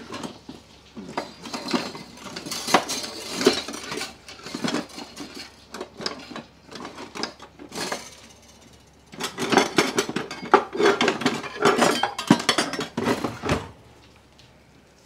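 Metal kitchen utensils and pans clinking and clattering against each other as a drawer full of them is rummaged through, the clatter busiest in the last few seconds.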